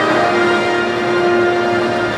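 Music of held, bell-like chords, changing notes just after the start.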